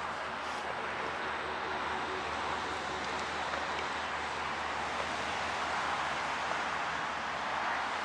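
Steady outdoor background noise of road traffic, with a faint low hum and no distinct events.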